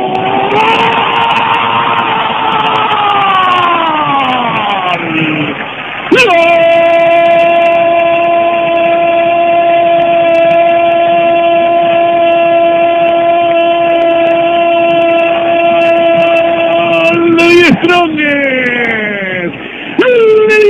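Spanish-language football commentator's long goal cry: a first shout that bends down in pitch over about five seconds, then one note held steady for about eleven seconds, falling away near the end.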